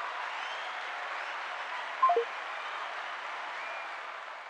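Steady applause, easing off slightly near the end, with a brief falling tone about two seconds in.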